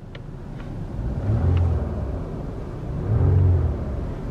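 2008 Lexus ES350's 3.5-litre V6 heard from inside the cabin, its revs swelling up and falling back twice, each time for under a second.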